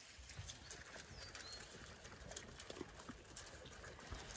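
Faint, scattered clicks and soft knocks of movement in a muddy farmyard, with one short bird chirp about a second in.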